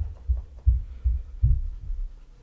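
Cloth-wrapped fingers polishing a leather oxford shoe, each rubbing stroke coming through as a dull low thump, about three a second.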